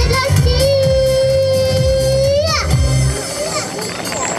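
A young girl singing into a microphone over music, holding one long note that wavers and drops away at its end. The accompaniment stops about three seconds in and the sound fades.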